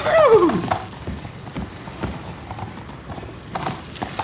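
A pony whinny that falls in pitch over about half a second, followed by hooves clip-clopping on pavement, getting sharper and louder near the end.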